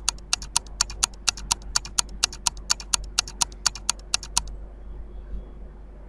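Countdown-timer ticking sound effect, sharp even ticks at about four a second that stop about four seconds in, over a faint low hum.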